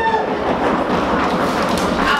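Audience drum roll: many hands drumming rapidly on tables, a dense, steady rumble.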